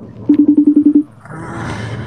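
A phone call going through: a short, loud, low buzzing tone pulsing about ten times a second for under a second, then a hiss as the line opens.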